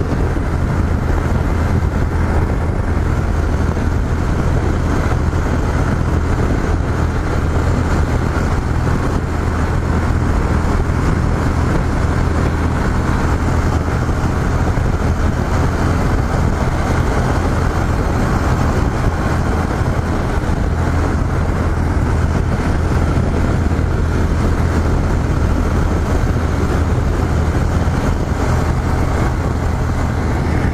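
Yamaha XT 660Z Ténéré's single-cylinder four-stroke engine running at a steady highway cruise, a constant low drone mixed with the rush of wind and road noise over an on-bike camera microphone.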